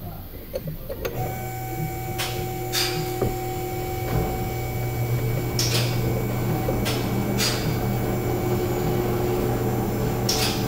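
A steady machine hum starts about a second in and keeps on, with a handful of sharp metallic clicks and scrapes from hand tools working on a diesel fuel injector held in a vise.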